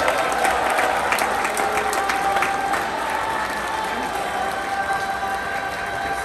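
Theatre audience applauding, a dense patter of many hands clapping that thins a little in the second half, with a few steady held tones underneath.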